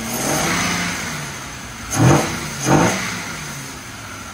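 High-compression Toyota 1FZ 4.5-litre straight-six, fed by a Holley Sniper EFI throttle body on a carburettor manifold, running and being revved. It rises and eases at the start, then gives two sharp throttle blips about two seconds in, each falling back toward idle.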